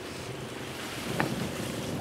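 Steady seaside ambience: wind buffeting the microphone over lapping sea water, with a faint steady hum beneath and one short click a little past the middle.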